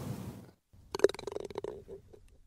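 Logo sting sound effect: a sudden hit that dies away within half a second, then after a short gap a rattling sound with a steady hum underneath that fades out.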